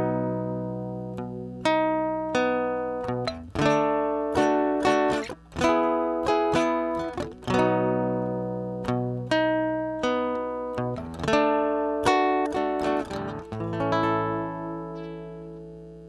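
Acoustic guitars playing a slow instrumental intro of struck chords, each left to ring and fade before the next, closing on a final chord that rings out near the end.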